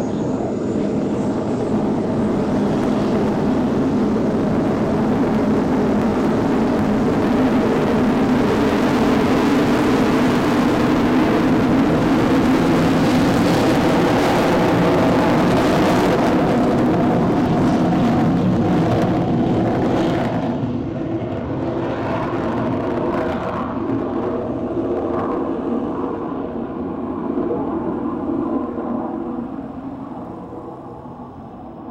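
A fixed-wing aircraft's engines running at take-off power as it departs. The steady engine sound swells to its loudest about halfway through, then fades over the last ten seconds.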